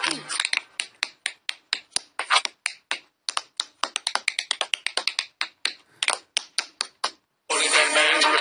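A fast, irregular run of short, clipped voice sounds, about five a second, each cut off sharply, with a short silence before music comes back near the end.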